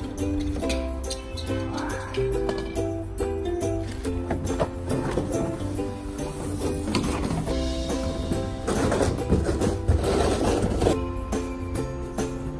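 Background music with a melody of held notes over a steady bass line. Several louder bursts of noise sit over it in the second half, the loudest about nine to eleven seconds in.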